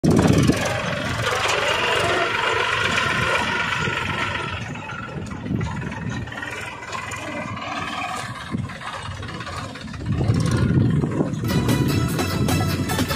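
Homemade mini tractor running as it drives along a road: loud at first, lower through the middle, and louder again about ten seconds in as it comes close. Music starts right at the end.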